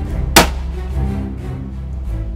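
A single rifle shot, sharp and brief, fired from a benchrest, about half a second in, over background music.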